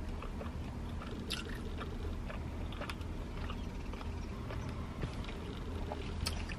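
A person chewing food, small scattered mouth clicks, over a steady low hum inside a car.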